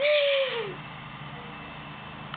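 A young voice drawing out a word, falling in pitch and trailing off within the first second, then only a low steady background hum with no impact or other distinct event.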